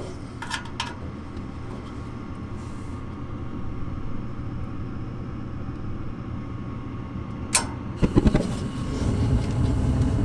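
Gas furnace running on its start-up cycle, a steady low motor hum, waiting for the gas valve. Near the end the gas valve opens with a sharp click and the burners light off a hand-held lighter with a low whoosh, then keep burning, a louder rumble: a furnace lit by hand because its igniter is not working.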